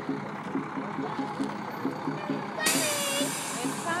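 Fire truck engine running as it rolls slowly up, with one sharp hiss of its air brakes about two-thirds of the way in.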